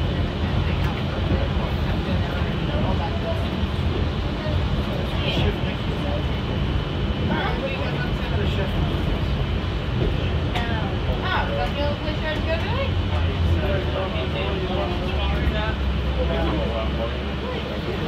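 Walt Disney World monorail car in motion, heard from inside: a steady low running rumble with a faint steady high whine. Passengers' voices are heard in snatches over it.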